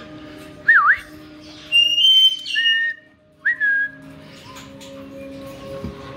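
Caique parrots whistling: several short, clear whistles in the first four seconds, one quickly rising and falling, others held briefly or sliding down, over a faint steady hum.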